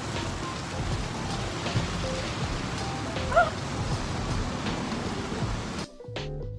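Steady rain falling, an even hiss that cuts off abruptly just before the end.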